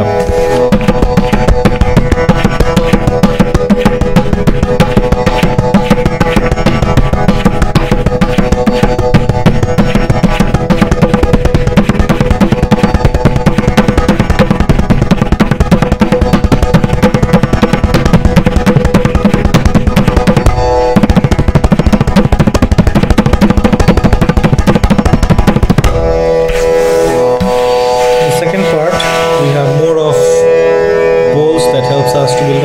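Tabla played with fast, even finger strokes on the right-hand drum, with the left-hand bass drum sounding underneath, in a long continuous roll. There is a brief break about 21 s in, and the drumming stops about 26 s in, leaving a steady pitched accompaniment that runs under the whole passage.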